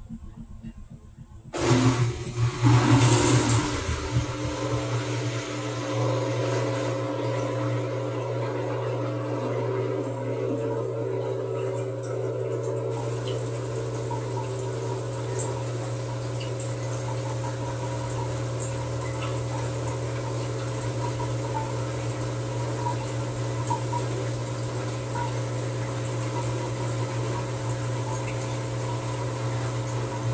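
TCL TWF75-P60 front-load inverter washer. About a second and a half in, water suddenly starts rushing into the drum, loudest for the next couple of seconds. It then settles into a steady low hum as the drum turns the wet bedding.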